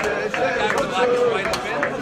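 Crowd of men singing together with steady rhythmic hand clapping, about three claps a second.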